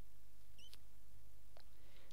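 Two faint computer mouse clicks over a steady low hum, as a web page is scrolled and a browser tab is clicked.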